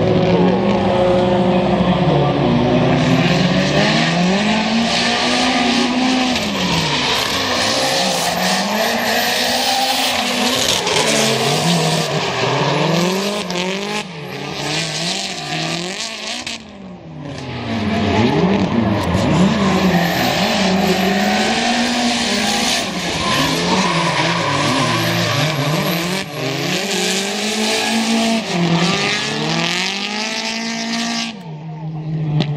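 Two drift cars sliding in tandem: their engines rev up and down over and over as the drivers work the throttle, over the steady screech of spinning tyres. The noise dips briefly a little past halfway, then picks up again.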